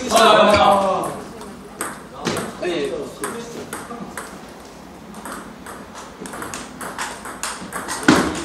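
Table-tennis rally: the celluloid-type ball clicking off rubber-faced paddles and bouncing on the Champion table, a quick irregular run of sharp clicks throughout.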